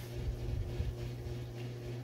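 Room tone: a steady low electrical or appliance hum with faint rumble.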